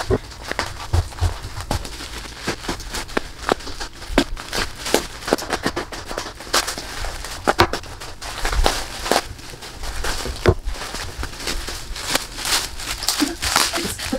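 Plastic bubble wrap being handled and pulled off a wrapped pot: steady crinkling with many irregular sharp crackles and snaps.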